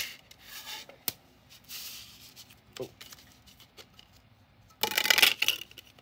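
Plastic CD jewel case being handled and opened: a sharp click at the start, a lighter click about a second later and some rubbing, then a louder burst of plastic clattering and scraping about five seconds in.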